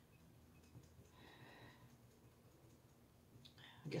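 Near silence: faint room tone with a few soft clicks and a brief, soft breathy sound about a second in.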